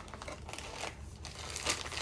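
Camera box being opened and white packing wrap pulled out and crumpled: a run of irregular rustling and crinkling, with a slightly louder crackle near the end.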